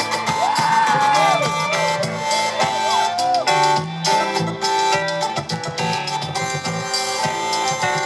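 Live rock band playing over a loud festival sound system, with a short featured instrumental solo: high lead notes that bend and glide up and down, mostly in the first half, over sustained chords and a bass line.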